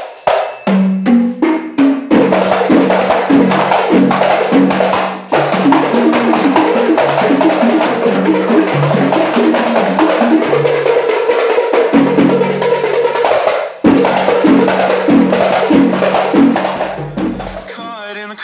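A qasidah group's rebana frame drums and jingle tambourines played together in a fast, busy rhythm over a stepping melody line. The playing drops out briefly about five seconds in and again near fourteen seconds, and fades near the end.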